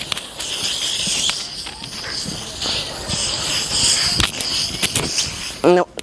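Aerosol can of Axe body spray hissing in a long, continuous spray, with a few faint clicks; a voice cuts in near the end.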